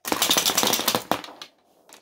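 Rapid-fire B-Daman toy marble shooter firing a quick burst of marbles from its magazine: a fast rattle of plastic clicks and marble clacks lasting about a second, then tapering off.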